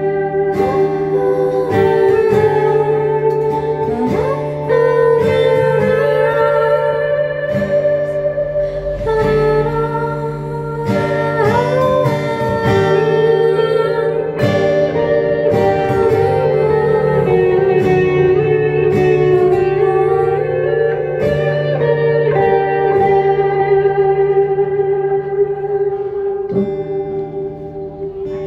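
A woman singing a slow song to her own acoustic guitar, with a second guitar, an electric, playing along. The music gets quieter near the end.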